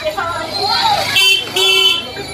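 A vehicle horn honking twice in quick succession, two short steady-pitched blasts, over street chatter.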